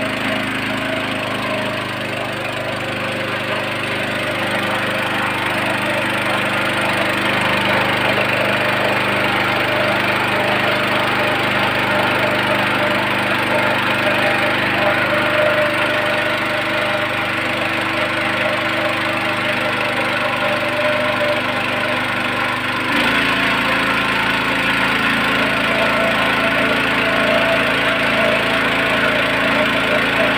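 Small gasoline engine-driven water pump running steadily, pumping water up from a shallow well, with water splashing out around the pump body. The engine note shifts abruptly about three-quarters of the way through.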